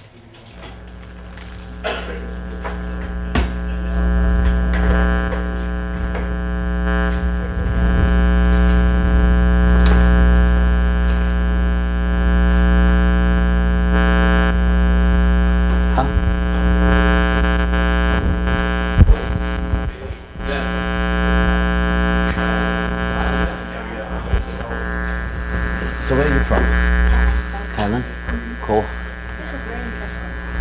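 Electric tattoo machine buzzing steadily. It builds up over the first few seconds and dips briefly about two-thirds of the way through.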